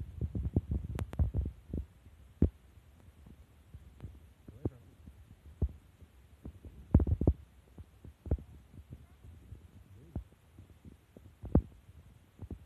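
Irregular low thumps and rumble on the microphone, with a few short clicks. They come thickest in the first two seconds and again around seven seconds in.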